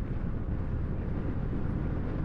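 Steady wind rush on the microphone while riding a Honda ADV150 scooter at about 35 mph, with the scooter's engine barely audible under it.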